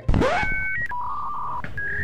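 Edited-in electronic beep sound effect: a short rising sweep, then a string of steady beep tones that change pitch step by step, like phone keypad tones.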